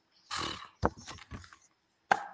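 A taster sniffing and sipping whisky from a glass: a short breathy sniff, then a smack of the lips just before the middle.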